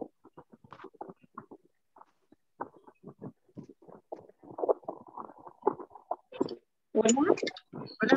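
A person's voice coming through a videoconference call, broken up by a failing connection into short garbled fragments with dropouts, steadier near the end.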